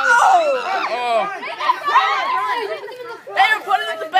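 Speech: several voices talking and calling out over one another.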